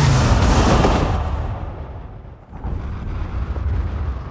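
Film-trailer sound design: a deep boom and rumble whose high end fades away within about a second and a half, leaving a low rushing rumble of air around a car in free fall after dropping out of a cargo plane.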